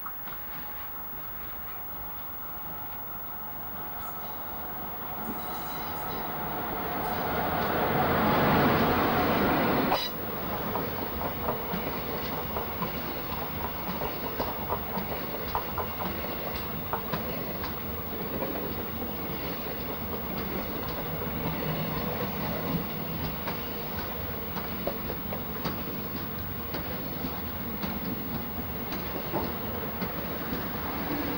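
Talgo Pendular train hauled by a Renfe class 354 diesel locomotive approaching and passing: the sound builds steadily to its loudest about nine seconds in and drops sharply at about ten seconds. The low Talgo coaches then roll by with a steady rail rumble and quick clicking of wheels over rail joints.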